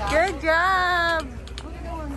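A high-pitched voice calling out: one drawn-out, wordless call of about a second, near the start.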